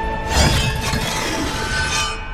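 Film score music with held tones, cut by a sudden crashing sound effect about half a second in that fades away over the following second.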